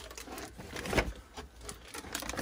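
Nylon dump pouch rustling while plastic water bottles are pushed into it, crinkling and knocking, with a louder knock about a second in.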